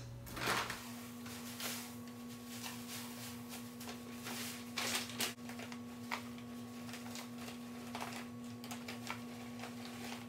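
Scattered rustles and crackles of perlite and potting mix being poured from plastic bags into a plastic planter trough, over a steady hum.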